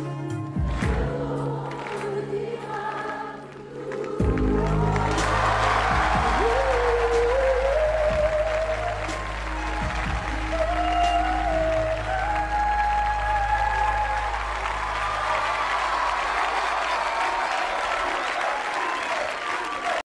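The final bars of a live ballad: a female voice holds a long closing note that steps up in pitch over a sustained band accompaniment. From about four seconds in, a large studio audience breaks into applause and cheering that carries on to the end.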